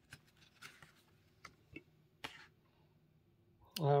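A hand handling a homemade paper notepad: a few faint, short paper rustles and taps, spread over the first couple of seconds.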